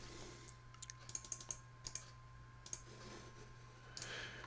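Faint scattered clicks of a computer keyboard and mouse, a quick cluster about a second in and a few more later, over a faint steady electrical hum.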